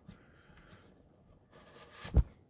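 Near silence, with faint rustling and handling from hands working items out of a tight foam insert in a wooden watch box.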